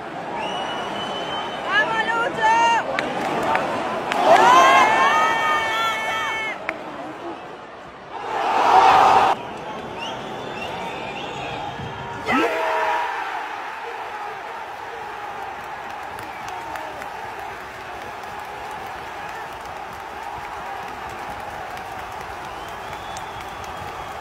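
Football stadium crowd noise: loud shouts and yells from spectators close by in the first half with a sudden surge around 9 seconds, then the steady roar of a large cheering crowd.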